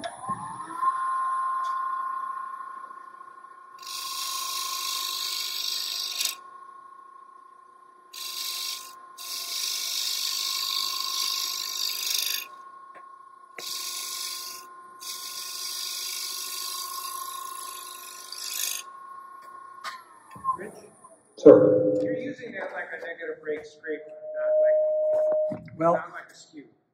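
A wood lathe's motor whine rises as the lathe spins up at the start, runs steadily, then falls away as the lathe is stopped about twenty seconds in. Over the whine, a hand tool cuts the spinning wooden box part in three hissing spells of a few seconds each, forming the edge to a slight taper for a snug fit.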